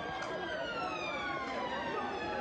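Emergency-vehicle siren wailing, its pitch falling slowly, with crowd voices underneath.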